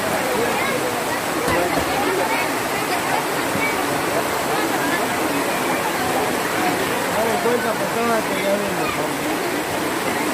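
Heavy rain falling on the plastic tarp shelter overhead, a constant even hiss, with voices of a crowd talking under it.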